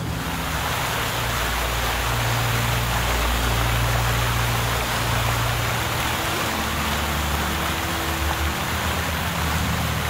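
Seawater flooding into a ship's boiler room: a steady rush and churn of water that starts suddenly and holds throughout, with a low steady hum beneath it.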